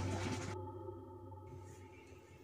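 A sustained low sting from a horror soundtrack: a few steady ringing tones that fade away over the two seconds.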